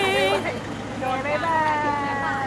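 Music with a long wavering held note cuts off about half a second in. High-pitched voices then call out in short gliding cries, with a steady low background hum.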